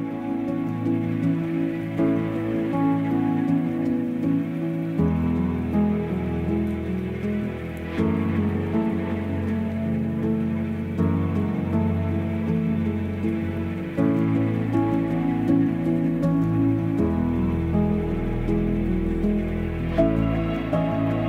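Background music: slow, sustained chords that change about every three seconds.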